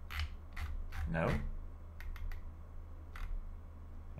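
Scattered sharp clicks of a computer mouse, with a quick run of three about halfway through, over a steady low hum.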